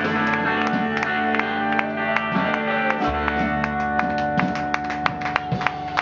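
Live band playing electric guitar, bass and drums: held guitar notes over regular sharp drum hits.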